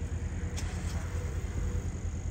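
Steady low rumble of a truck on the move, heard from inside the cab: engine and road noise.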